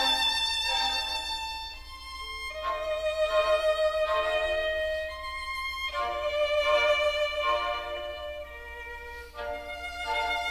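Background music led by a violin playing slow, sustained melodic notes.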